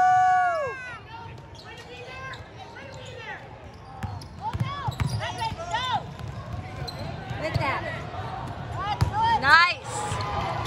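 Sneakers squeaking on a hardwood gym floor in short chirps and a basketball bouncing during play, with the squeaks thickest near the end. A loud, steady held tone cuts off within the first second.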